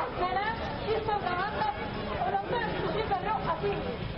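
A crowd of people talking over one another: several voices at once, with no single speaker clear.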